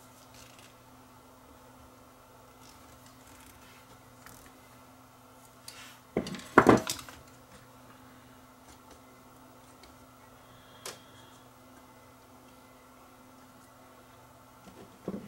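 Small tools and parts handled on a workbench while an old electrolytic capacitor is twisted off a camcorder circuit board: a brief clatter about six and a half seconds in and a single sharp click near eleven seconds, over a low steady hum.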